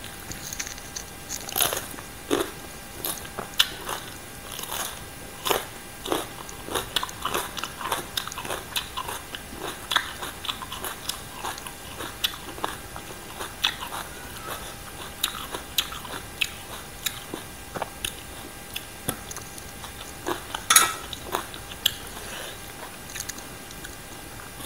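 Crunchy chewing and biting of spicy green papaya salad and raw vegetables: many sharp, irregular crunches, with one louder crunch about three-quarters of the way through.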